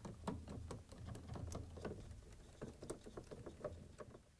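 Faint, irregular light clicks and taps of a plastic washer water inlet valve and its hoses being handled and seated into the dispenser housing, over a low steady hum.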